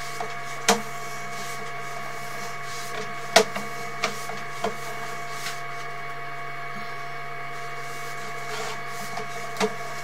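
Sewer inspection camera rig running with a steady electrical whine and hum while the camera's push cable is pulled back through the line. A few sharp clicks come through it, about a second in, at three to five seconds, and again near the end.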